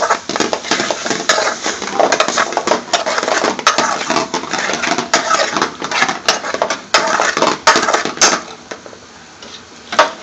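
A metal ladle scraping and clinking against a metal pan as chicken tikka pieces are stirred into a thick masala sauce. It is a rapid, uneven run of clinks and scrapes that dies away about eight seconds in.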